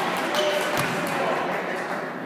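Voices of spectators and players in a gymnasium during a basketball game, with a basketball bouncing on the wooden court.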